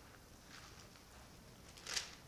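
Faint rustling of thin Bible pages being turned, with one short, louder rustle near the end.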